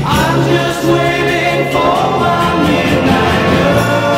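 A 1966 British pop record playing: singing voices with backing vocals over a band with a steady beat and jingling percussion.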